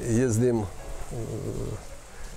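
A man's voice speaking in two short phrases with a brief pause between them.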